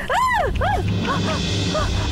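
A woman screams once, a long cry that rises and falls, then gives several short, high cries. Tense background music with a low rumble runs underneath.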